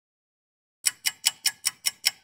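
Silence, then a fast, even clock-like ticking, about five sharp ticks a second, starting just under a second in.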